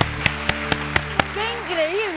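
Title-sting music: six sharp percussive hits, about four a second, over a held tone, followed by a voice coming in about one and a half seconds in.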